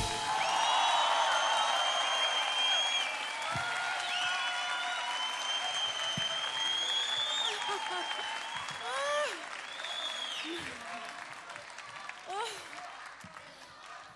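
Studio audience applauding as a live song ends, with long, shrill whistles and short cheering calls over the clapping. The applause fades gradually.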